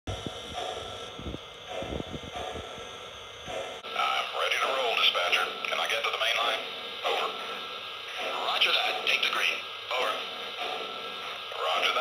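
A voice talking as if over a two-way radio, thin and cut off at the top, starting about four seconds in. Before it, a few low knocks.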